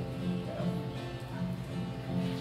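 Acoustic guitar playing a few bars of the tune, steady held notes that change every half second or so.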